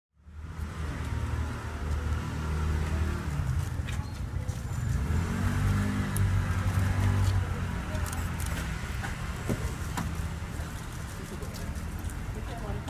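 A motor vehicle engine running with a low, steady hum, loudest in the first half, and a few sharp clicks in the second half.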